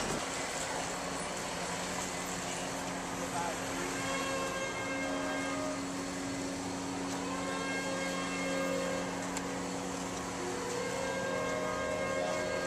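City street noise with a steady low hum throughout, like an idling engine. A set of higher steady tones comes in about four seconds in and comes and goes, with faint voices underneath.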